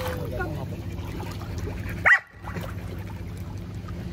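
A golden retriever's single sharp, high bark about two seconds in: the dog barking to call her owners back out of the pool.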